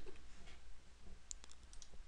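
A few faint, sharp computer mouse clicks.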